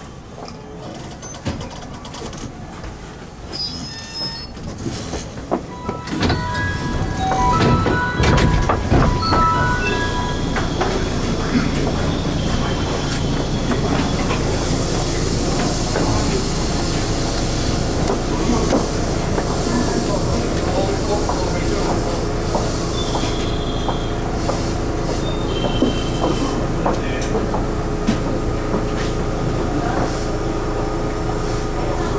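Railway noise heard from the cab of a train standing at a station: a run of short stepped tones about six seconds in, then steady train rumble with a few brief wheel squeals.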